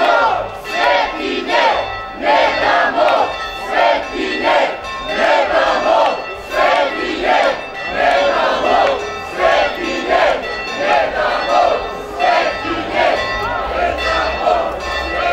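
A large crowd of marchers chanting a slogan in unison, loud rhythmic shouted syllables about twice a second.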